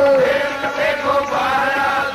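Sikh kirtan: a held, wavering sung note closes a line of Gurbani just after the start, then harmonium melody and voices carry on.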